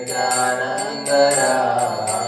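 A man chanting a devotional song in long, gliding notes, with small hand cymbals struck about three times a second.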